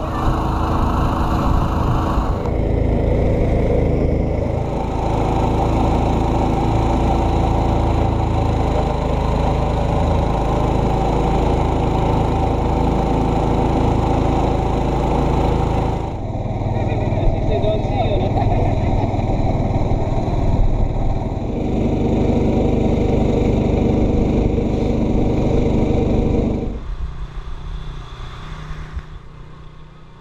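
Small wooden motorboat's engine running steadily and loudly, its sound shifting at edits about two and sixteen seconds in and fading away near the end.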